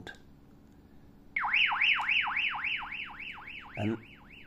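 XF-888S handheld two-way radio sounding its emergency siren through its small built-in speaker, set off by pressing and holding the lower side button. The siren starts about a second in as a rapid warble, its pitch sweeping down and back up about four times a second.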